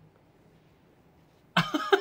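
Near silence, then a sudden burst of coughing about one and a half seconds in.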